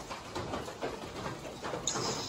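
Rain falling on the wet forest and a wooden shelter, heard as a faint hiss with scattered, irregular drips.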